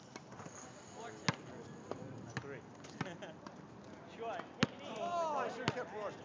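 A basketball bouncing on an asphalt court: about six sharp, unevenly spaced bounces, the loudest a little past four and a half seconds in. Voices call out toward the end.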